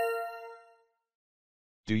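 A single chime, struck just before and ringing out over most of a second as it fades: the cue that marks the end of one dialogue segment in an interpreting test. The next speaker comes in near the end.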